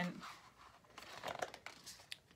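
A page of a paperback picture book being turned by hand: a few short paper rustles and scrapes as the page is lifted and brought over.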